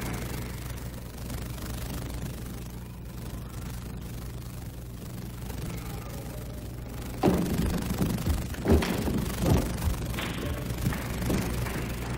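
A table tennis rally: the celluloid ball struck back and forth with bats and bouncing on the table, sharp knocks roughly a second apart starting about seven seconds in. Before that there is only a steady low hum and faint hall noise.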